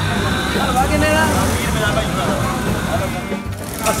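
Busy roadside ambience: people talking in the background over a steady low rumble of traffic.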